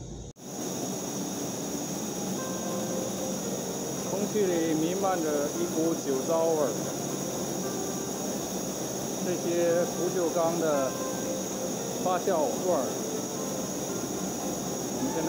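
Steady industrial din of a distillery fermenting hall, a constant hiss with low machine hum. A distant voice talks over it several times, barely audible.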